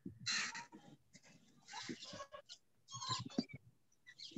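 Faint bird calls in the background: three short, harsh calls about a second apart.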